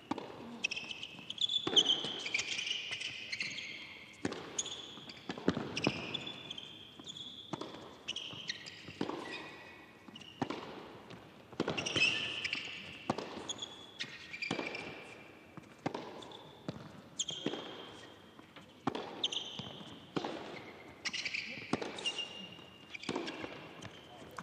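A long tennis rally on a hard court: the ball is struck and bounces back and forth about once a second. Short high squeaks of players' shoes on the court surface fall between the hits.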